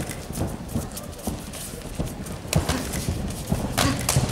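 Irregular thuds and slaps of MMA fighters moving and trading strikes on the cage canvas, a couple of sharper hits in the second half.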